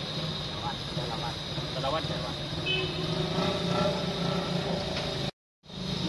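Low, indistinct voices talking over a steady low hum of engines and traffic. The sound cuts out completely for a moment near the end.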